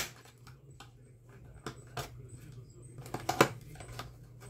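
A small screwdriver clicking and scraping against the plastic housing of an Arno clothes iron while prying at its snap-fit temperature knob: a few short, sharp plastic clicks, the loudest about three and a half seconds in, over a faint steady hum.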